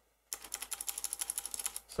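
Computer keyboard keys tapped in a fast, even run of clicks, about a dozen a second, starting about a third of a second in, as a stretch of code is deleted key by key.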